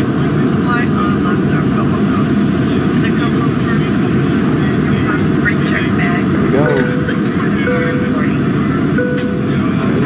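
Airliner cabin noise at cruise: a steady, even drone of engines and airflow heard from inside the cabin at a window seat, with faint voices over it.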